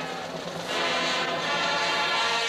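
Marching band playing a sustained passage, with a brief drop in volume just under a second in before the full band comes back in.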